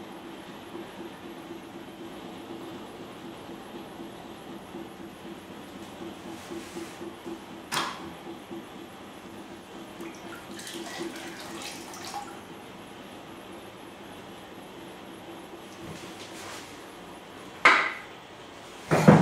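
Electric potter's wheel humming steadily. About ten seconds in, water splashes briefly as a hand dips into the slip bucket beside the wheel. A sharp click comes a little before that, and a short loud sound near the end.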